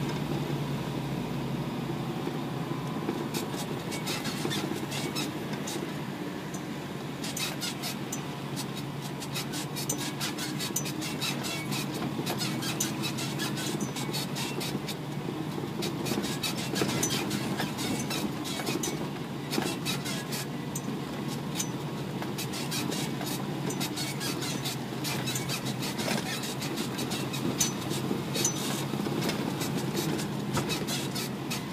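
Isuzu NPR 4WD truck driving down a rough dirt track: a steady engine drone, with frequent sharp clicks and rattles throughout.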